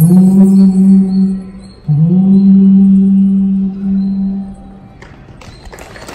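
Recorded song with two long held notes, each sliding up slightly at its start. The second begins about two seconds in and fades out a little before five seconds, as the music ends. A short stretch of noise follows near the end.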